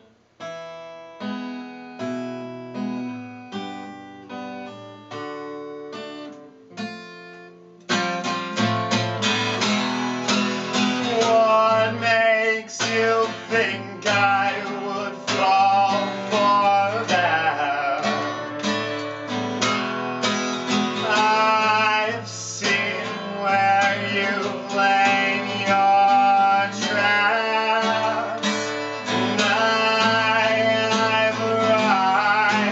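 Solo steel-string acoustic guitar: a quiet passage of single picked notes for about eight seconds, then louder, steady strumming with a man singing over it.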